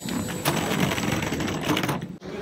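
Rapid, steady rattling clatter from an airport moving walkway's metal treads and end plate. It starts and stops abruptly.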